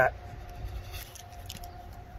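Faint scraping and handling of a thick cardboard tube and a small fixed-blade knife just after a cut, with a few light ticks around the middle.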